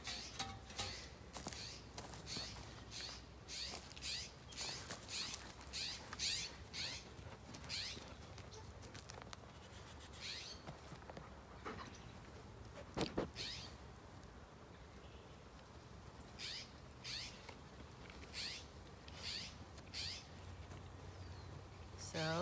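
Repeated short, high-pitched animal calls, each falling in pitch, coming in runs of about two a second with pauses between runs, and a single sharp knock about thirteen seconds in.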